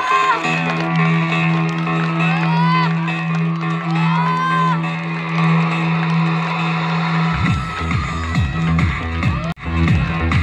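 Electronic dance music with a long held bass note and sliding high tones, changing to a pulsing bass beat about seven seconds in.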